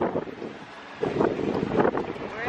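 Wind buffeting the microphone, softer at first and then gusting louder about a second in.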